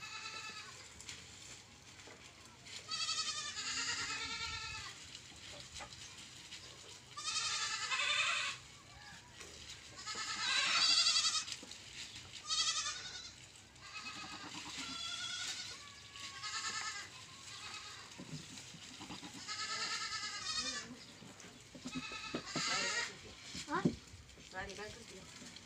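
Goats bleating, about a dozen wavering, quavering calls one after another, some in quick pairs, the loudest near the middle.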